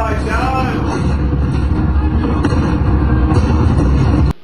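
A loud, steady deep rumble, with a wavering voice-like sound over it near the start.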